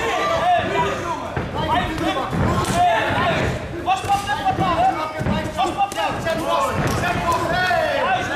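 Voices calling out from ringside over repeated dull thuds from a kickboxing bout, the blows and footwork landing at irregular intervals.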